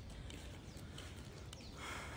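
Faint footsteps of someone walking on stone paving, over a low steady rumble.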